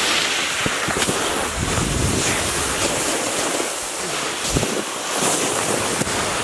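Snowboards sliding over packed snow with wind on the microphone: a steady rushing hiss, broken by a few short knocks.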